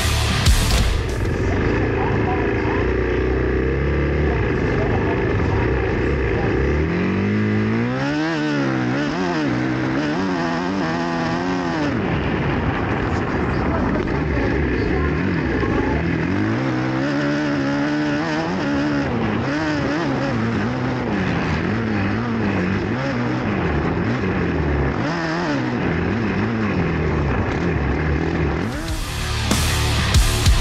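Onboard sound of a 450-class motocross bike's engine ridden on a lap of the dirt track, its revs climbing and dropping over and over as the throttle is opened and shut. Music is heard briefly at the start and end.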